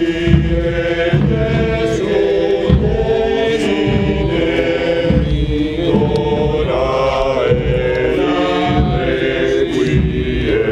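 A choir chanting a slow sacred chant, voices holding long notes.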